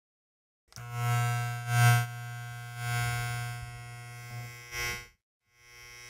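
Electric buzz of a neon sign flickering on: a steady low hum with a rough buzz on top that surges several times, cuts out for a moment about five seconds in, then comes back.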